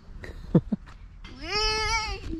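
A child's drawn-out, high-pitched vocal squeal that rises and then holds with a slight waver, starting just past the middle. Shortly before it, about half a second in, come two short downward-sliding sounds, the first the loudest moment of the clip.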